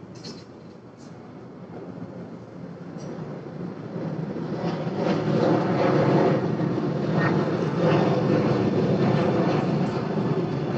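Airliner flying low overhead: its engines make a rushing rumble that swells over the first five or six seconds and then stays loud.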